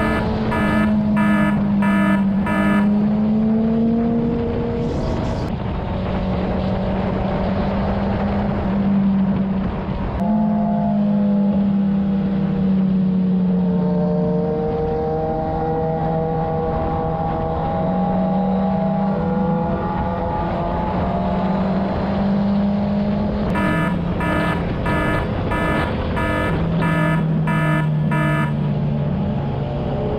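A motorcycle engine running at highway cruising speed over wind and road noise, its pitch drifting gently with the throttle. A repeating electronic alert beep, about one and a half beeps a second, sounds for the first few seconds and again for several seconds near the end.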